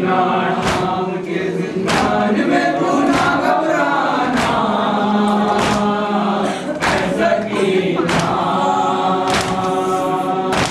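A group of male mourners chanting a Shia noha in unison, with sharp beats about every 1.2 seconds keeping time with the chant, the chest-beating of matam.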